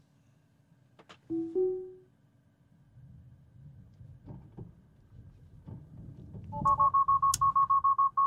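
Tesla Model 3's cabin alerts: a short chime about a second in as Full Self-Driving engages, a faint low rumble of the wheels spinning on slushy snow, then from about six and a half seconds a loud, rapid beeping, the 'Take Over Immediately' alarm sounding because FSD has lost traction and disengaged.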